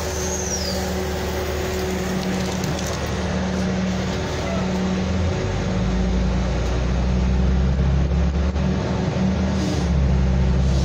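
Vehicle engine and road noise heard from inside the cabin. A brief high squeal falls in pitch in the first second. About five seconds in, the engine note shifts and grows louder, as if the vehicle is pulling away or speeding up.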